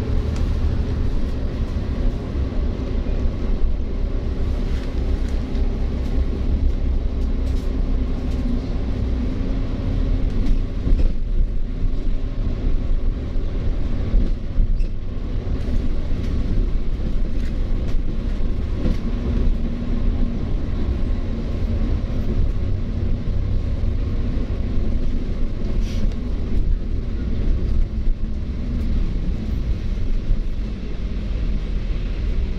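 Double-decker bus in motion, heard from inside: a steady low rumble of engine and road noise, with the engine drone rising and falling slightly in pitch.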